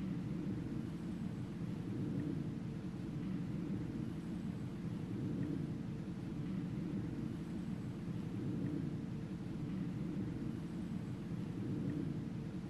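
Steady low rumble of an SUV driving along a dirt forest track, engine and tyres running at an even, slow pace.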